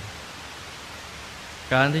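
Steady, even hiss of an old recording during a pause in a calm spoken meditation; the speaking voice resumes near the end.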